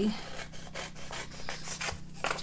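Scissors cutting through a sheet of patterned craft paper: a quick, irregular run of snips with the paper rustling.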